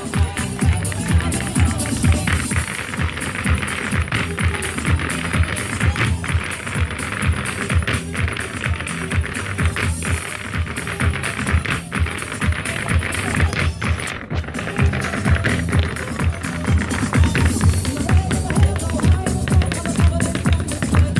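Irish dance music played over loudspeakers, with dancers' shoes beating out a steady rhythm on a portable wooden dance floor.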